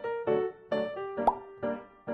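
Light keyboard background music with evenly paced notes, with a short rising plop blip a little past the middle.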